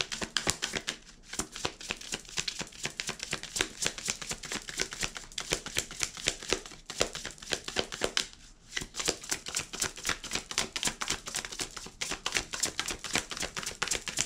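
A deck of oracle cards being hand-shuffled, a rapid run of crisp card clicks and riffles with a short pause a little past halfway.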